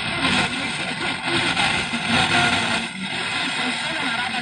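Car radio FM reception of a weak long-distance station carried by tropospheric ducting: a steady hiss of static with faint fragments of the station's audio breaking through.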